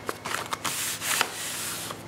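Sheets of black paper in a freshly stitched journal being handled and turned over by hand. A couple of light taps come first, then a dry rustling and rubbing of paper from about half a second in.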